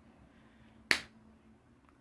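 A single sharp click about a second into a pause, otherwise near-quiet room tone.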